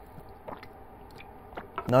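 A man taking faint sips from a paper cup of hot chocolate, with a few soft mouth and swallow clicks over a quiet room.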